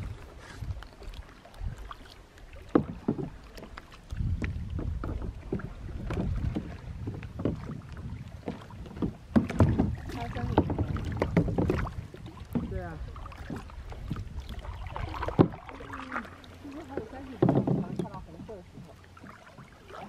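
Kayak paddling: paddle blades dipping and splashing in the water, with irregular knocks and splashes against an inflatable kayak.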